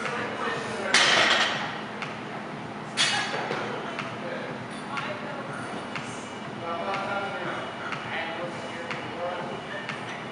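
Loaded barbell with bumper plates coming down onto a lifting platform: a loud clattering crash about a second in, the loudest sound here, and another sharp crash about three seconds in, followed by a few lighter clinks of the plates.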